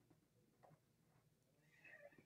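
Near silence: quiet room tone, with a few faint strokes of a felt-tip marker writing on paper.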